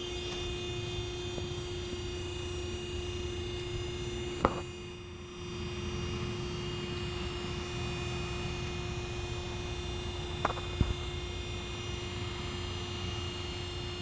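Powered one-piece hangar door opening: its drive runs with a steady hum and low rumble as the panel tilts up. A sharp click or knock comes from the door about four and a half seconds in, and two more close together about ten and a half seconds in.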